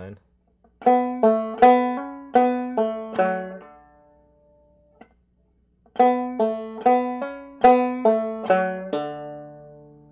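Open-back banjo played clawhammer style: a short phrase of about eight plucked notes and strums played twice, with a pause of about two seconds between, the last note left ringing.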